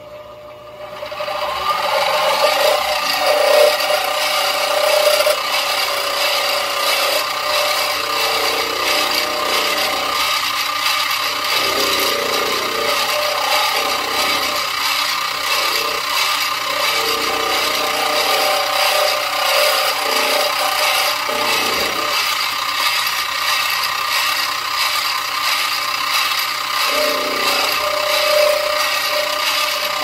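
Benchtop milling machine's spindle spinning up about a second in, then running with a steady whine while the end mill cuts into a black plastic HO-scale locomotive truck part. The cut widens the truck's socket so it swivels enough for 15-inch radius curves.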